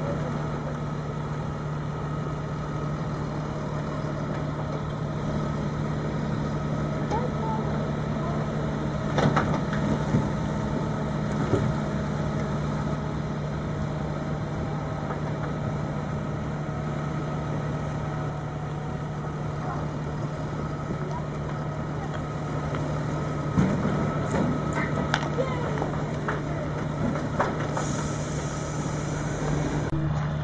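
Diesel engines of a timber crane and a Fendt tractor running steadily while logs are loaded, with a few sharp knocks of logs being handled.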